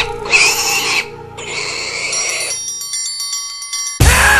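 Sound effects within a horrorcore rap album track. First come noisy, rough bursts over a soft music bed. About two and a half seconds in the bass drops out, leaving a pattern of high electronic beeping tones switching on and off until the music comes back in.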